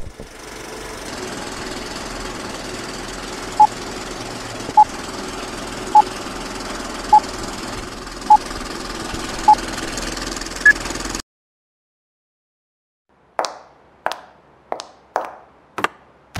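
A steady hiss carries six short, evenly spaced electronic beeps about a second apart, followed by one higher beep, like a countdown. The sound cuts off suddenly, and after a short silence a run of sharp knocks about every half second begins near the end.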